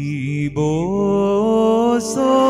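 Orthodox liturgical chant: a sung voice holds a note that glides slowly upward from about half a second in.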